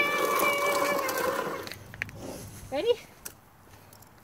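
A baby's long, steady high-pitched "aah" held for nearly two seconds, then fading. A short click follows about halfway through.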